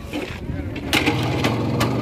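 Motorcycle engine that drops low, then picks up and runs again about a second in, with sharp irregular pops over its running note.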